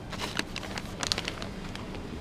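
Plastic snack bag crinkling as it is taken off a shop shelf and handled, in short clusters of crackles about a quarter second in and again about a second in, over a faint steady low hum.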